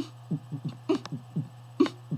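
Beatboxed techno beat made with the mouth closed, the sounds forced out through the nose: short low kicks about four a second, with a sharper snare-like hit a little under once a second. A steady low hum runs underneath.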